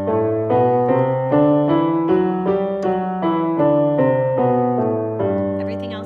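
Roland digital piano playing a G major scale, one even note after another at about two to three notes a second, ending on a held note that dies away near the end.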